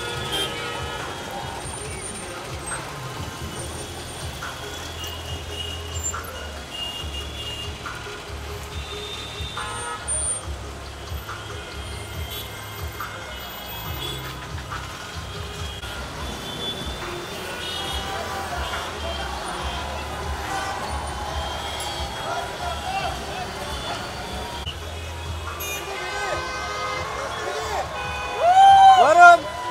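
Busy street ambience: traffic, short vehicle horn toots and crowd voices, with music playing underneath.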